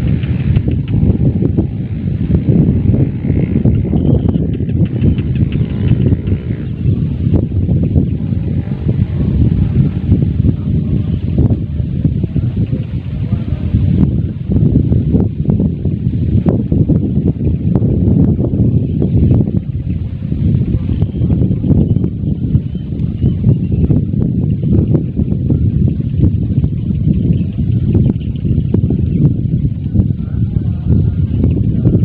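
Wind buffeting the camera microphone: a loud, low rumble that rises and falls in gusts throughout.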